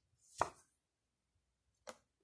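A tarot card being taken off the deck and laid down: one short, sharp snap about half a second in, then a fainter click near the end.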